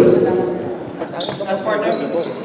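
Sneakers squeaking on a gym floor in short high chirps, with a basketball bouncing, during a stoppage in a basketball game.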